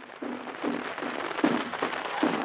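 Heavy crackle and hiss of a 1936 instantaneous celluloid disc recording, with about five dull caja drum beats evenly spaced under the surface noise.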